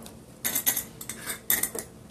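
A small supplement bottle being picked up and handled: a quick series of clicks and clattering rattles lasting about a second and a half.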